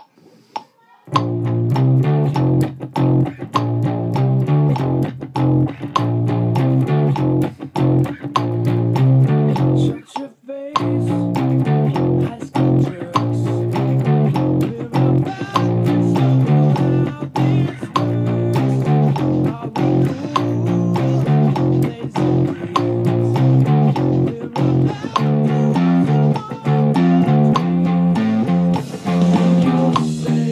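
Electric bass guitar playing a rock bass line at a slowed 100 beats per minute, coming in after a few count-in clicks about a second in, with a short break about ten seconds in.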